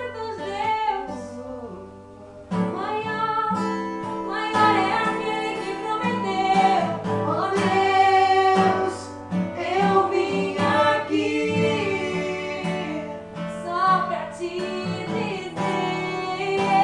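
Acoustic guitar accompanying a man and a woman singing a worship song together. The music drops quieter about two seconds in and comes back fuller half a second later.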